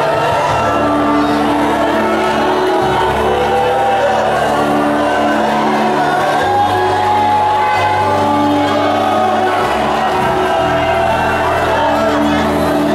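Loud live gospel worship music in a large hall: sustained bass chords shifting every two to three seconds under singing voices, with the congregation calling out in praise.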